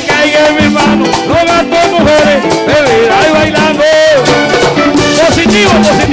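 A live vallenato band playing: button accordion, electric guitars, congas and guacharaca scraper in a continuous, steady dance rhythm.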